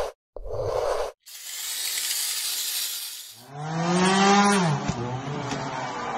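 Sound effects for an animated logo intro: a short stuttering burst ending about a second in, then about two seconds of rushing hiss, then a pitched swell that bends downward just before the fifth second. A steady, noisy bed follows.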